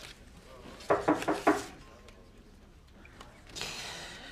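Four quick raps on a wooden door about a second in, then a rustle of paper near the end as letters are handled.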